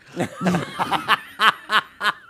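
People laughing at a joke in short chuckles, about four a second.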